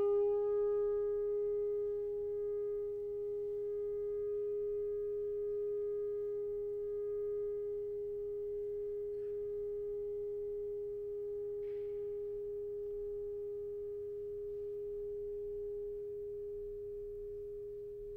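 Alto saxophone holding one long, soft note that is almost a pure tone, slowly fading towards the end.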